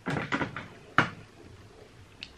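Makeup items handled on a desk: a short clatter in the first half second, then one sharp click about a second in, like a case or lid snapping shut.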